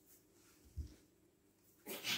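Near silence, broken by one short, soft, deep thump a little under a second in.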